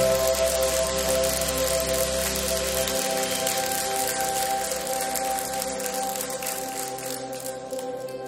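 Soft ambient music of sustained chords, with a congregation applauding over it; the applause thins and fades toward the end as the music carries on.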